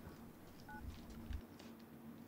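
A smartphone gives one short two-tone keypad-style beep about two-thirds of a second in, just after a call ends, over quiet room tone with a faint steady low hum.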